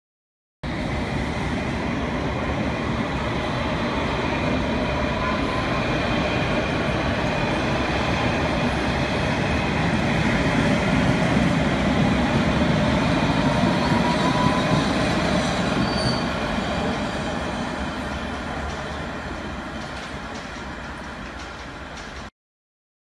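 A London Underground S Stock train running along a station platform, with rumbling wheels on the rails and faint rising whines from its motors. The sound builds to its loudest about midway, then fades over the last several seconds as the train moves off.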